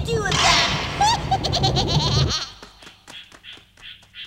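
A villain's loud cackling laugh over a noisy rush, which cuts off suddenly about two seconds in. It is followed by a quieter run of soft, even taps, about three a second.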